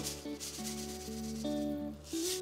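Toasted sesame seeds poured onto sliced scallions in a glass bowl, a dry grainy hiss at the start and again near the end, over background guitar music.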